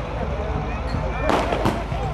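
Aerial fireworks going off overhead, with two sharp bangs close together about a second and a half in.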